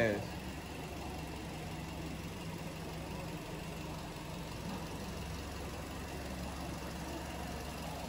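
An engine idling steadily, an even low hum that does not change.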